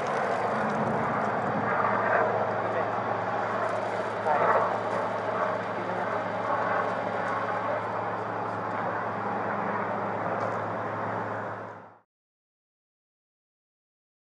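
Steady low hum of running vehicles under outdoor background noise, with faint, indistinct voices; the sound cuts off suddenly about twelve seconds in.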